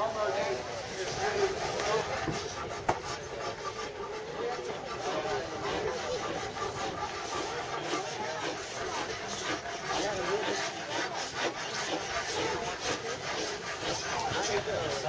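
Hand tools scraping and shaving Osage orange bow staves clamped in vises, a run of repeated rough strokes on the wood, more frequent in the second half, with people talking in the background.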